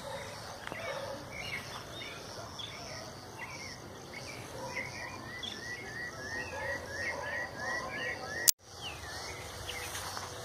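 Birds chirping over steady outdoor ambience: scattered calls, then a regular run of short rising chirps, about three a second, in the second half. A sharp click and a brief dropout cut in near the end.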